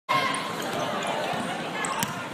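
A basketball being dribbled on a hardwood gym floor amid the steady chatter of a crowded gym.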